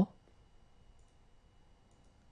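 The tail of a spoken French vowel /ɔ/ cuts off at the very start, then near silence: faint room tone with a steady faint high whine. Near the end there is a faint click, a mouse click advancing the slide.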